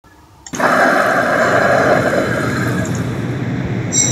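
Steady rush of running water from a small stream pouring through a culvert, starting about half a second in.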